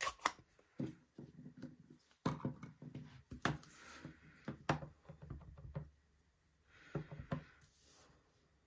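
A series of irregular light clicks and knocks as a plastic Stampin' Up! ink pad case is opened and a clear acrylic stamp block is tapped onto the ink pad and set down on cardstock, with some rubbing and handling in between.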